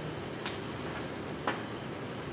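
Two light clicks about a second apart over steady room hum.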